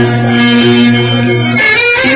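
Live amplified band music playing for dancing, with a held low note under a melody. The music briefly thins out about a second and a half in, then carries on.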